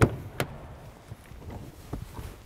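Car door latch clicking open as the outside handle of a 2024 Kia Sorento is pulled, followed by a second, lighter click.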